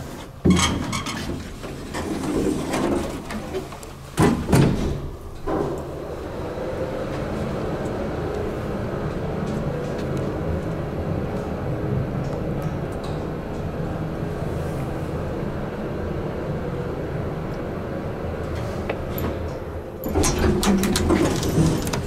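Vintage 1967 Otis traction elevator on a trip: knocks and clunks in the first few seconds as the door shuts and the car starts, then the motor runs with a steady hum of several held tones while the car travels. Near the end the sound turns louder and more uneven as the car arrives.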